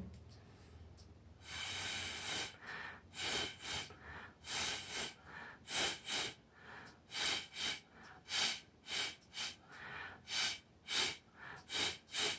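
Paintbrush bristles brushing and dabbing acrylic paint on a canvas: short scratchy strokes, roughly one to two a second, starting about a second and a half in.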